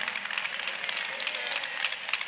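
A church congregation clapping, a dense patter of many hands.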